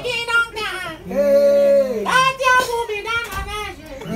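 A man singing high, held notes without words, sliding up and down in pitch in short phrases of about a second each.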